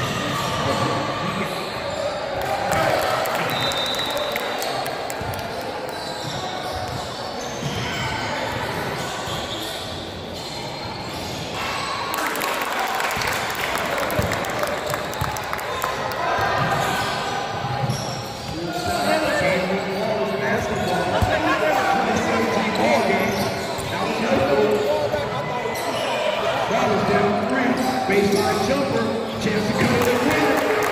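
Basketball bouncing on a hardwood gym floor, the strikes echoing in a large hall, with people's voices in the background that grow busier in the second half.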